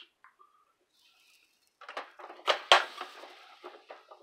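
Handling clatter from an electric tortilla maker, its hinged metal lid being worked and pressed down on the dough, with two sharp clacks in quick succession about halfway through.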